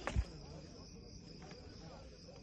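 Crickets chirring steadily in a night field, with a short low thump right at the start.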